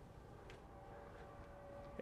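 Near silence: faint room tone with a faint steady hum and one light click about half a second in.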